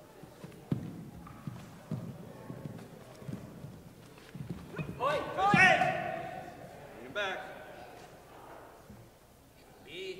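Bare feet thumping and shuffling on a hardwood gym floor during point sparring, in irregular knocks. A loud shout lasting about a second comes about five seconds in, the loudest sound, followed by a shorter call a couple of seconds later.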